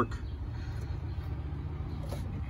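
A steady low rumble with no clear events in it.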